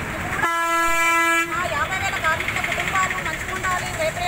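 A woman speaking is cut off by one steady pitched tone, about a second long, that blanks out all other sound; her speech then resumes.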